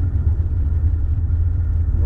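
Steady low rumble of a moving car, road and engine noise heard inside the cabin.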